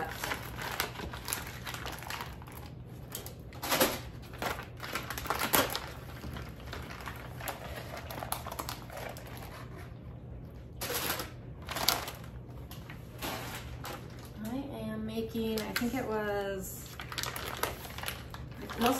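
Plastic packaging of raw turkey breasts crinkling and crackling as it is torn open and handled, in irregular sharp crackles with a few louder ones. A voice is heard briefly near the end.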